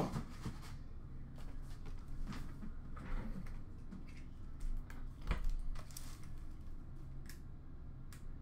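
A cardboard trading-card hobby box being handled on a glass counter: scattered light taps, slides and rustles, with one louder knock about five seconds in as it is moved.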